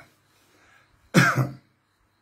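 A man makes one short, loud throat noise, a cough or throat-clear, about a second in, after a brief pause in his talk.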